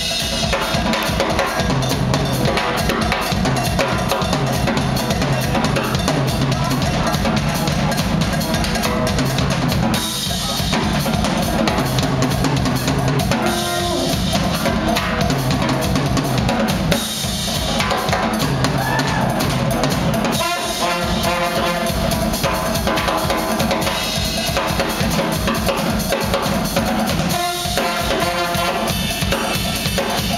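Live drum kit solo: a dense, unbroken run of strokes on snare, toms, bass drum and cymbals, with brief let-ups about ten, seventeen, twenty and twenty-seven seconds in.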